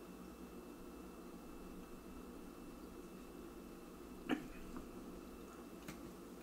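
Faint room tone with one short soft knock about four seconds in, as a glass of beer is set back down on its coaster on a stone counter.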